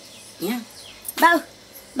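A woman's voice making short calls of "ba", each a brief note that bends up and down; two come in quick succession and a third begins right at the end.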